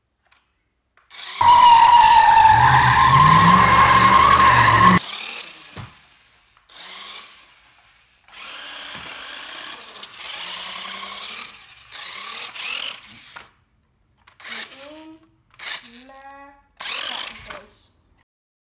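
Toy-grade XSpeed MadFire RC off-road buggy's small electric motor whining at full throttle as it drives across a wooden floor, loudest for about three and a half seconds near the start with the pitch rising slightly, then in shorter, quieter bursts.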